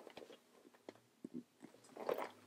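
Faint handling noise from two handbags being moved about: a few soft clicks and brief rustles, otherwise near silence.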